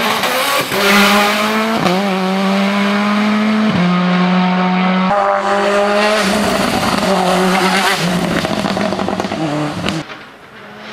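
Hillclimb race car's engine at high revs, pulling at a near-steady pitch and breaking off briefly about six times, with a sharp crack at several of the breaks, as the car drives past and away.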